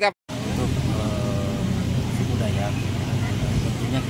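Steady low hum of a running engine under outdoor background noise, with faint voices in the background; it follows a brief dropout at the very start.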